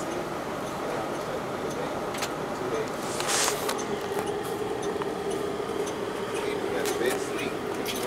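Cabin noise inside an MCI D4505 coach: a steady hum with people's voices in the background. A short hiss comes about three seconds in, and there are a few light clicks.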